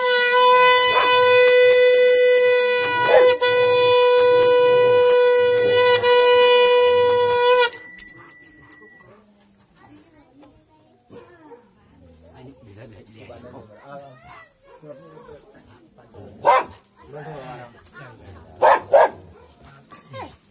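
A conch shell (shankh) blown in one long, steady, loud note for nearly eight seconds, over a small bell ringing that stops about a second after the conch. Quieter scattered sounds and a few short bursts follow near the end.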